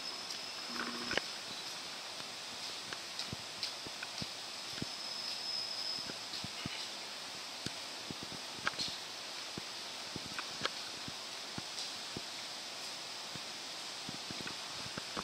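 A diesel railcar drawing slowly into the station round a curve, heard faintly under a steady outdoor hiss with scattered light clicks and ticks and a thin high whine in the first half.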